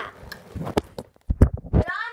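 Bumps and knocks of a handheld phone camera being swung and handled, a run of sharp thumps with the loudest about one and a half seconds in. A high, wavering voice starts near the end.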